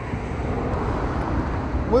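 City traffic noise: a steady rumble of passing vehicles that swells just after the start and holds.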